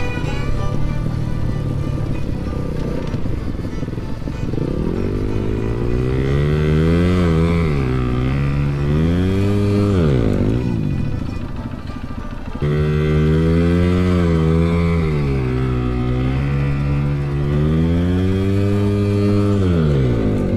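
Dirt bike engine heard from the bike itself, revving up and easing off again and again, its pitch climbing and falling with each pull of the throttle. It drops lower about halfway through and cuts back in sharply a couple of seconds later.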